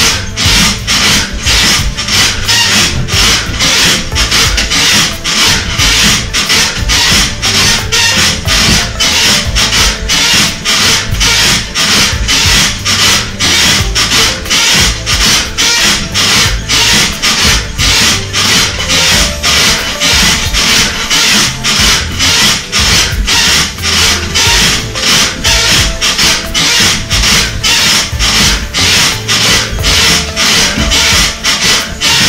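Rhythmic rasping about two to three times a second, in step with bouncing on a rebounder (mini trampoline), with music playing along.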